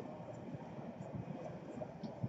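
Faint, irregular soft taps and handling noise from trading cards being handled one by one, over a steady low hiss.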